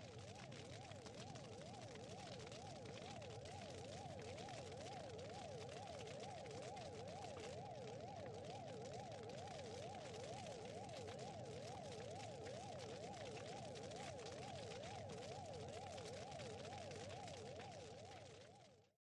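Faint electronic warbling tones over a low hiss, sweeping up and down in pitch a couple of times a second without a break.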